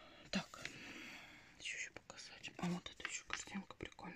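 A woman whispering softly under her breath, with a few short voiced syllables mixed in.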